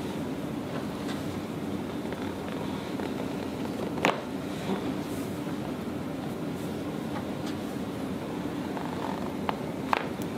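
Steady low background hum with one sharp crack about four seconds in and two smaller clicks near the end: a chiropractor's hand thrust on the upper back popping the thoracic spinal joints.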